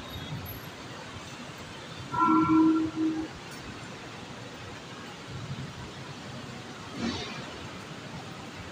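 Steady city traffic hum. About two seconds in comes a loud, steady-pitched tone, broken briefly in the middle, and a short sharp knock comes near the end.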